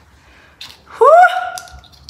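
A woman's short, high-pitched 'ooh'-like cry about a second in, rising in pitch and then held briefly: a reaction to the sting of putting a stud into a freshly pierced ear.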